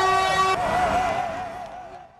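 Vehicle horns sounding: a loud, steady horn blast that cuts off about half a second in, followed by a second, wavering horn tone that fades away toward the end.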